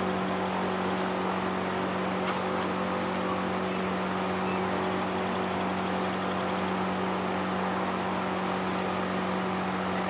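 A steady mechanical hum with a strong low tone and a few higher ones, holding an even level, with a few faint light clicks over it.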